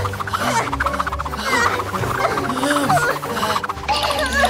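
Frantic rapid scratching and rummaging as stuffing is torn out of a giant plush teddy bear, with many short squeaks over background music.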